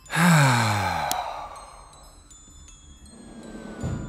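A person's long, heavy sigh, the voice falling in pitch over about a second, in exasperation at an unexpected interview. A single click follows just after the sigh.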